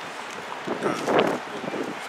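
Wind noise on the microphone over outdoor street ambience, briefly louder around the middle.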